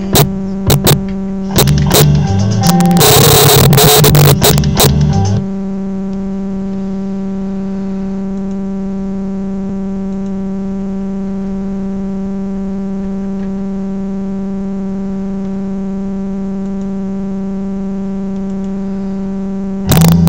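Loud band music with sharp guitar strokes for about five seconds, which stops suddenly and leaves a steady electrical hum with a buzzy stack of overtones, level and unchanging for the rest.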